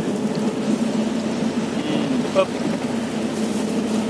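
A motor vehicle's engine idling with a steady low hum.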